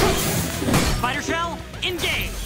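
Cartoon soundtrack: a sudden crash-like sound effect at the start, then a character's wordless vocal cry, over background music.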